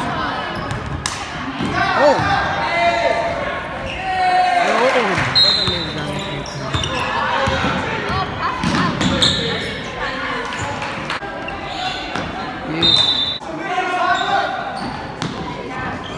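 Basketball bouncing on a hardwood gym floor during a game, with players and spectators shouting and calling out in a large echoing gym. A couple of short high squeaks cut through.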